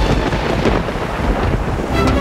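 Loud, steady rumbling noise with a hiss, like thunder and heavy rain.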